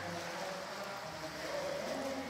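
Steady outdoor noise of moving water and wind, with faint voices in the background.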